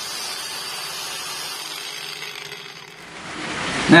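Nagawa NCG100 cordless angle grinder at its top speed (about 7,100 rpm) cutting straight down through black steel hollow tube, a steady grinding hiss that fades out about three seconds in.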